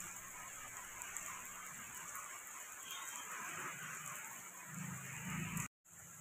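Heavy rain falling on a wet cement courtyard, a faint steady hiss that cuts off suddenly near the end.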